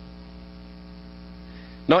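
Steady electrical hum of several even tones under a faint hiss in the recording's background; a man's speaking voice comes back in at the very end.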